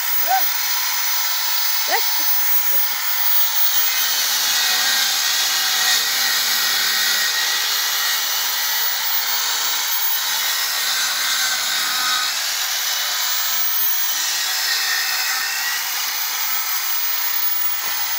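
Handheld circular saw mounted upside down under a workbench as a makeshift rip saw, running continuously with its trigger clamped on while lengths of timber are ripped through the blade. It gets louder for most of the middle while a board is being cut.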